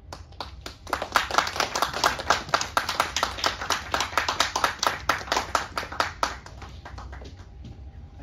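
A small audience clapping, the separate claps distinct. It begins about half a second in and dies away about a second before the end.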